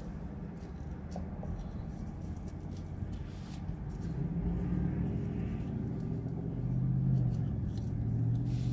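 A 2017 Corvette Grand Sport's V8 idling in an open-top cabin: a steady low rumble that grows a little louder from about halfway. A few light clicks come early on as a GoPro head mount is handled.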